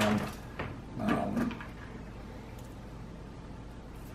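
Faint clicks and rustles of a plastic drone propeller blade being handled in the hands during the first second or so, then quiet room tone.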